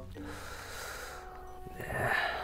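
A man's long breath through the nose close to the microphone, lasting about a second and a half.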